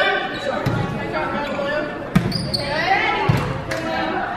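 Voices calling out in an echoing gymnasium during a volleyball match, with a few sharp thumps of the volleyball being hit, the sharpest about two seconds in and another about a second later.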